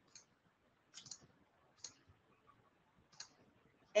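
A handful of faint, separate computer mouse clicks, irregularly spaced, as options are picked from dropdown menus.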